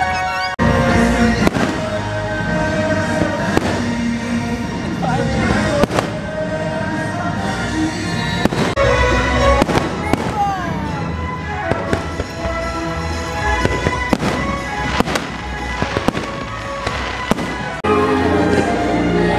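Fireworks bursting in repeated sharp bangs, about one a second, over the fireworks show's loud music soundtrack.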